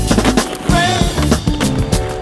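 Skateboard landing a flip trick, the deck slapping down, then its wheels rolling on concrete, under loud music with a steady beat.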